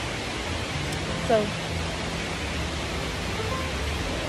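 Steady outdoor background noise: an even hiss with a low rumble beneath it, and one short spoken word partway through.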